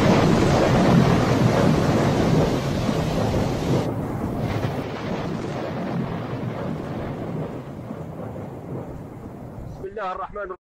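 A torrent of floodwater rushing through streets: a loud, steady roar that eases off gradually, its high hiss dropping away about four seconds in.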